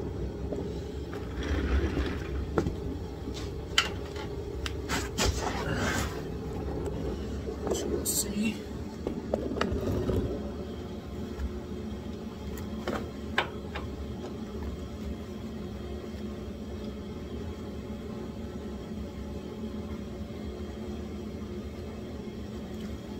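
Hand tools on a car's undercarriage: a breaker bar and socket clinking and knocking as they are fitted onto a frame bolt, with rustling as the worker shifts underneath. The sharp knocks fall mostly in the first half, over a steady low hum.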